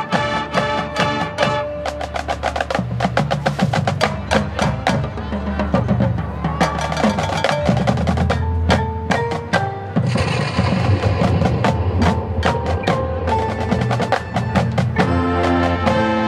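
High school marching band playing a percussion-heavy passage: rapid mallet and drum strikes over sustained low notes, with a bright hissing swell about ten seconds in. The winds come back in strongly near the end.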